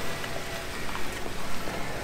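Two-door Jeep Wrangler crawling slowly over a rocky ledge: low engine noise and a crackle of stones and grit under the tyres over a steady hiss, with a few faint clicks.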